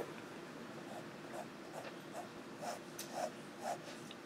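Noodler's Tripletail fountain pen nib scratching faintly across lined paper in short repeated strokes, about two a second, beginning about a second in.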